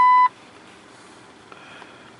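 Innova 3160 OBD-II scan tool beeping: one steady electronic tone that cuts off sharply about a quarter second in, followed by faint room tone.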